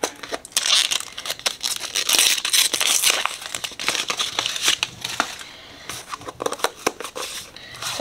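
Paper wrapper band being pulled off a hardcover sketchbook: crinkling, crackling paper and hand-handling noise. It is busiest in the first half and thins out after about five seconds as the cover is opened.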